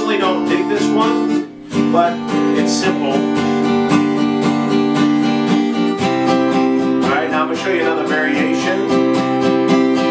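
Capoed Taylor acoustic guitar strummed in a steady, even down-up pattern. The chord changes about two seconds in, after a brief drop in level, and again about six seconds in.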